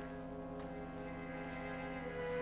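Orchestral film score: a low brass chord held steady, moving to new notes near the end.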